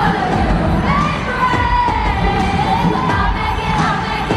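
Live pop concert heard from within the audience: a girl group singing over a loud amplified backing track with a heavy beat, and the crowd cheering and screaming along. One sung note is held, wavering, for about two seconds in the middle.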